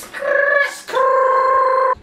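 Two long held musical notes with a wavering pitch: a short higher one, then a lower one lasting about a second that cuts off abruptly.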